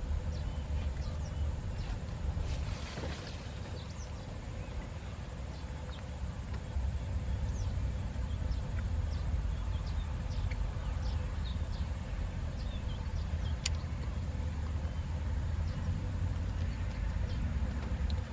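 Outdoor field ambience: a steady low rumble with faint, scattered high chirps, and a single sharp click about fourteen seconds in.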